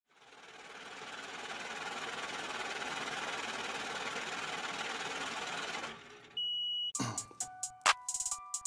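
Logo intro sound effect: a noisy hiss that fades in and holds for about six seconds, then cuts off, followed by a short high beep. Sharp clicks and steady electronic tones start near the end.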